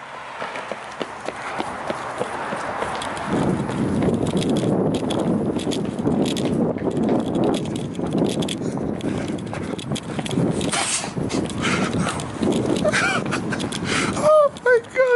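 Footsteps on asphalt, a quick walking pace of many short strikes, over a steady rush of wind and handling noise on a moving phone microphone.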